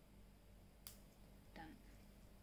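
A single sharp click of a metal wristwatch bracelet's clasp snapping shut, against near silence.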